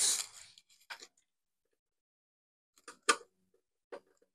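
Phillips screwdriver working small screws out of a power-station chassis: a short scraping hiss at the start, then a few light, sharp clicks and taps of the driver and screws, the loudest about three seconds in.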